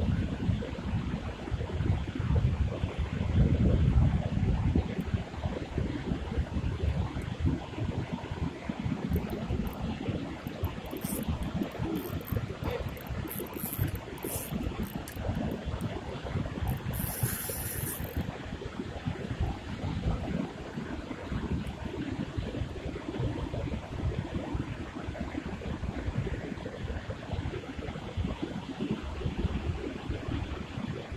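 Wind rumbling on the microphone over the steady rush of river water, strongest in a gust a few seconds in.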